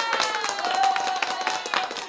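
A woman's voice holding one long, high, slowly falling note, a drawn-out cheer greeting a guest, over fast hand clapping.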